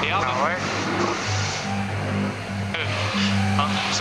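Rush of wind and water from an AC75 foiling racing yacht at speed, under background music with a pulsing bass line; a brief voice is heard at the very start.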